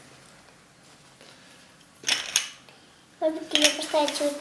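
A short clatter of small plastic lotto chips and cards being handled on the table, about two seconds in. A voice begins near the end.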